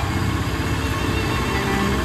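A small three-wheeled goods carrier's engine running as it passes close by, with a steady low rumble, and music underneath.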